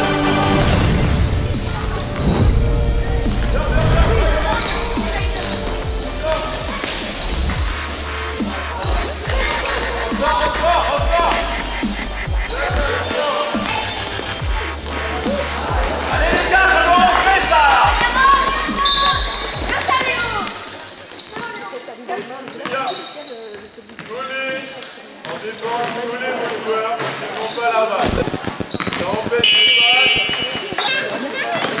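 A basketball bouncing repeatedly on a hard sports-hall floor, with voices calling out, all echoing in the large hall.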